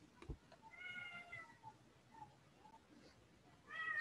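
Faint animal calls, two of them: a drawn-out call with a slightly falling pitch about a second in, and another starting near the end.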